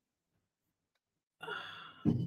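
Near silence for over a second, then a person's short breathy sigh near the end.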